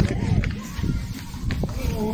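Quick running footsteps on a hard floor, with rumbling handling noise from a phone carried at a run and a few sharp clicks.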